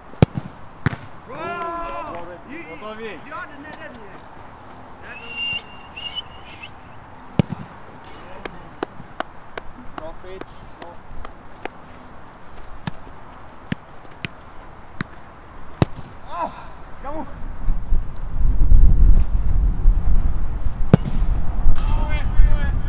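A football being kicked and knocked on artificial turf: sharp single thuds of ball touches and kicks, irregularly spaced, as a player juggles the ball and shoots. From about 18 s a loud low rumble of wind on the microphone takes over.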